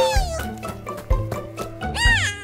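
Cartoon background music with a steady beat, and a high squeaky cartoon character's voice giving a short cry that falls in pitch at the start.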